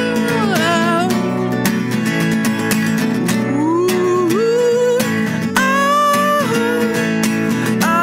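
Acoustic guitar strummed steadily, with a man's voice singing long wordless notes that slide up and down in pitch, including a slow rising slide near the middle.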